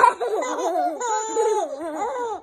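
A baby laughing: a string of high, bending giggles, loudest in a burst right at the start.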